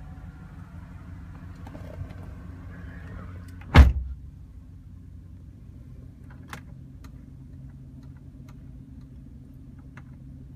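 2013 Chevrolet Silverado's V8 idling as a low steady hum heard from inside the cab, broken about four seconds in by a single loud thump and a fainter click a few seconds later.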